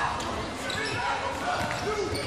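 A basketball being dribbled on a hardwood court, with players' voices on the court.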